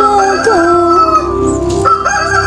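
Rooster crowing: a long, drawn-out cock-a-doodle-doo with stepped changes in pitch, and a second crow starting near the end.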